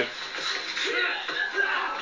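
Faint background voices and some music over a steady hiss, with no loud event.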